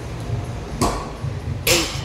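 A loaded barbell with rubber bumper plates knocks down on a rubber gym floor once, about a second in, during a deadlift repetition, with a short ring from the bar.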